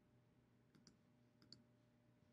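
Near silence with faint computer mouse clicks, two quick pairs about a second and a second and a half in.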